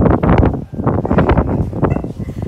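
Strong wind buffeting the phone's microphone: a loud rumbling noise that rises and falls in gusts, briefly easing a little after half a second in.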